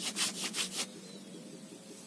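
Hand saw cutting through a waru (sea hibiscus) tree branch in quick, even strokes that stop a little under a second in.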